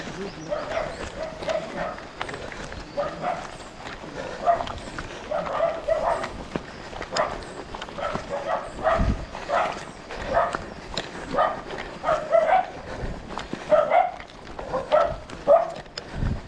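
A dog barking over and over, short barks roughly one a second, with runners' footsteps on the road underneath.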